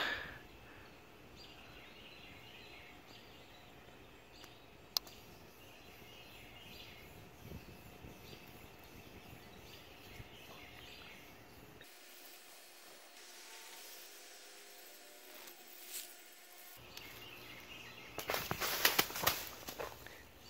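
Faint outdoor background with distant bird calls, a single sharp click about five seconds in, and a burst of loud rustling and knocking in the last two seconds.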